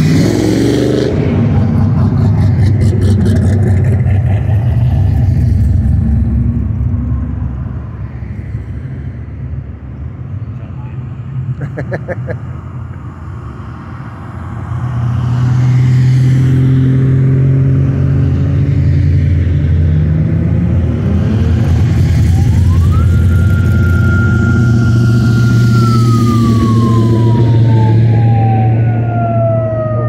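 Loud low rumble of street-machine engines running in slow cruise traffic, easing off through the middle and building again. About three quarters of the way in, a siren winds up, holds a high note for a few seconds, then slides back down.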